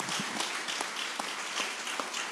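Applause from a seated audience and panel: many people clapping together in a steady patter.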